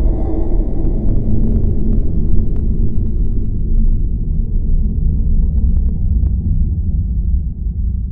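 Deep, loud rumble of trailer sound design under the title card, steady in the low end and slowly fading near the end, with a few faint crackles in the middle.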